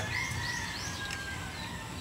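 Steady outdoor background noise with faint bird chirps: a few short high chirps in the first second and a thin held note that fades out about halfway through.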